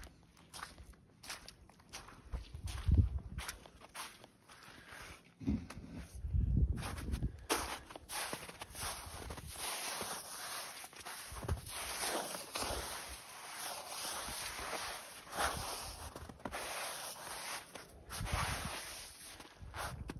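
Footsteps in wet, thawing snow and slush over matted grass: an uneven run of steps, sparse at first and denser and louder from about a third of the way in.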